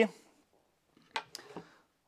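Two short, sharp clicks a little over a second in, followed by a faint scrape: small hard plastic parts of a vaporiser being picked out and handled.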